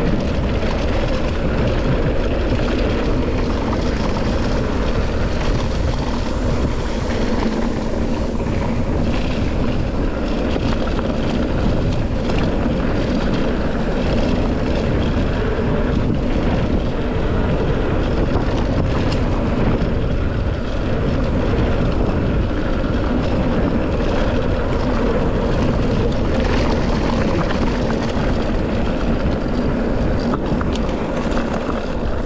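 Mountain bike rolling fast down a dirt singletrack: a steady rush of tyre noise and wind on the camera microphone, with small rattles from the bike over the bumps.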